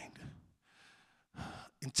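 A man's breath drawn in close to a handheld microphone, a short breathy rush of air with no voice in it, about one and a half seconds in. The end of a spoken phrase fades at the start, and the next phrase begins right at the end.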